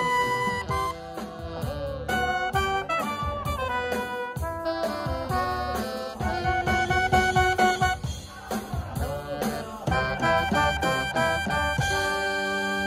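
Live show orchestra playing, with a trumpet close at hand playing held melodic notes and slides over the band. Short sharp percussive hits run through it.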